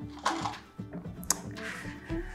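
Soft background music, with a single sharp click a little past halfway.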